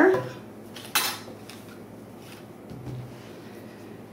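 A clothes hanger holding a shirt clinks once, sharply, about a second in, followed by faint rustling of the garment being handled.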